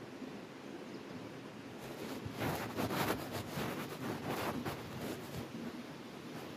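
Irregular rustling and scraping close to the microphone for about three seconds in the middle, over a faint outdoor background.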